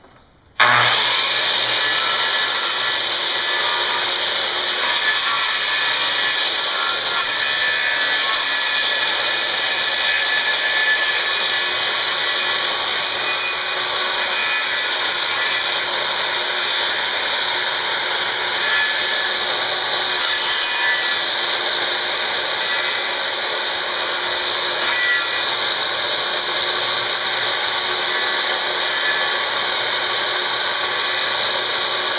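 A DeWalt circular saw switches on about half a second in and runs steadily, cutting a handhold into a wooden board.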